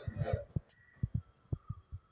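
A series of irregular low thumps, about a dozen in two seconds, with a voice trailing off at the very start.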